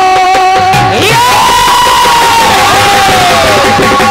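Live Indian devotional folk music with harmonium: a high melodic line of long held notes that slides up about a second in and glides down between notes.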